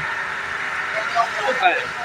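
Steady hiss of a high-pressure water jet spraying from a fire hose, with people talking over it in the second half.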